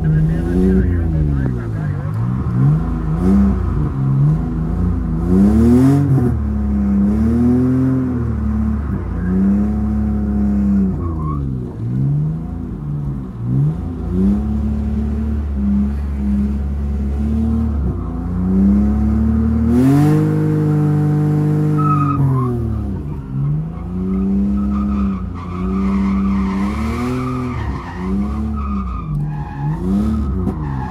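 Drift car engine revving up and down over and over as the throttle is worked through a drift, with tyres squealing and skidding. About twenty seconds in, the engine holds high revs for a couple of seconds.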